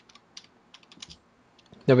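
Faint, irregular clicks of typing on a computer keyboard, a few keystrokes each second, before a man starts speaking near the end.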